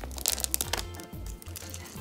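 Light clicks and rustling as chocolate chips and chopped pecans are scattered by hand over a caramel layer in a parchment-lined pan, most of it in the first second. Faint background music runs underneath.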